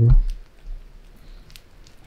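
Light rain falling, faint, with scattered drips ticking.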